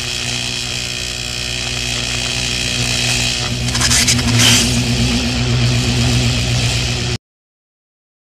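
Logo-reveal sound effect for a neon-letter animation: a dense noisy sizzle over a steady hum. It swells about three and a half seconds in and cuts off suddenly about seven seconds in.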